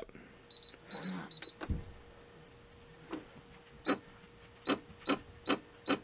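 Brother SE-400 embroidery machine's touchscreen beeping at each press of the layout arrow keys. There are three short high beeps about half a second in, then a run of five roughly every half second in the second half, with a single low thump near two seconds and a faint steady hum underneath.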